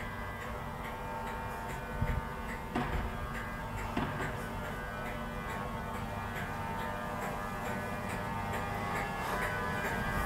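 LNER InterCity 225 train of Mark 4 coaches moving slowly past along the platform, with a steady electrical whine of several tones over a low rumble. A few knocks come from the wheels about two, three and four seconds in.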